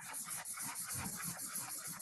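Blue felt-tip marker scribbling fast back and forth on paper, an even run of rubbing strokes about ten a second.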